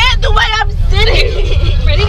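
A young girl crying and wailing in high, wavering cries, several in a row, over a steady low rumble.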